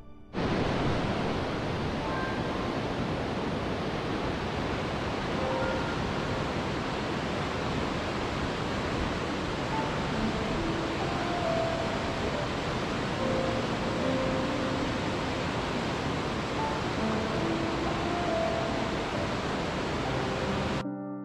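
Steady rushing of a waterfall, starting suddenly just after the beginning, with faint, sparse piano notes underneath.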